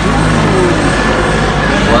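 Helicopter flying overhead: a steady low rotor and engine drone.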